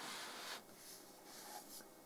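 Malcador Defender model tank being turned and slid by hand across a card tabletop mat: a brief, soft scrape in the first half second, then near silence.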